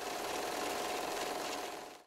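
Film-projector clatter used as a transition sound effect: a steady mechanical rattle with a faint steady tone in it, fading out near the end.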